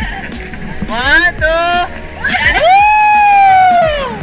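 People shouting a count, then one long high-pitched yell lasting over a second, rising at its start and sinking slightly as it ends.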